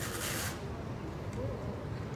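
A short burst of hiss, about half a second long, over a steady low background rumble.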